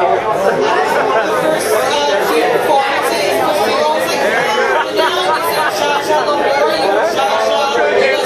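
Crowd chatter: many voices talking over one another at once, a steady, loud din with no single voice standing out.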